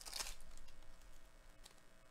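Foil trading-card pack wrapper being torn open: a short crinkling rip just after the start, then a few soft crinkles of the foil.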